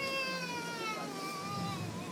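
A high, child-like voice holding one long drawn-out note that slowly falls in pitch, fairly quiet.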